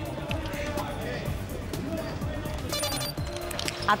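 News-report music bed, with faint crowd voices from the rowing footage and a brief high-pitched call about three seconds in.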